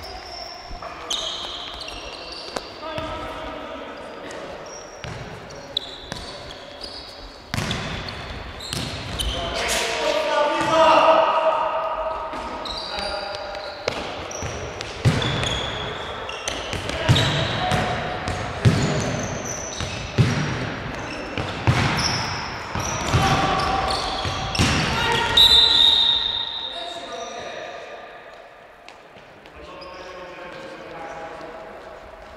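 Futsal being played in an echoing sports hall: the ball thudding off feet and the hard floor, trainers squeaking on the court, and players shouting to each other. The play is busiest and loudest in the middle stretch.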